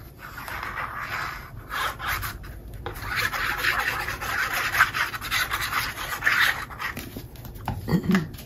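A liquid-glue bottle's nozzle scratching and rubbing across the back of a sheet of patterned cardstock as glue is spread on, with the paper rustling. It goes in several stretches with short breaks in between.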